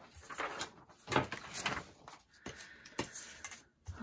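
Paper handling on a cutting mat: a dictionary page rustling and sliding as it is laid down, with a few light knocks as a plastic ruler is set on it. The strongest knock comes about a second in and a sharper click near the end.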